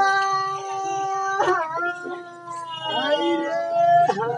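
A performer's voice wailing in three long held notes, one after another, like a theatrical lament.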